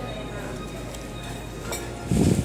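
Steady background noise of a restaurant dining room, with one short clink near the end.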